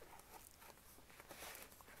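Near silence, with faint handling sounds as a paper notebook is slid into a leather cover.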